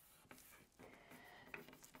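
Near silence: room tone with faint rubbing as fingers press a plastic stencil flat, and a small tick about one and a half seconds in.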